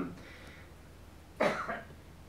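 A man coughs once, short and sharp, into the microphone about one and a half seconds in. Before it there is only a low steady room hum.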